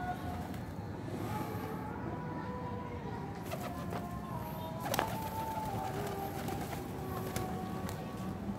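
Feral pigeons cooing, with a few sharp clicks among them, the loudest about five seconds in.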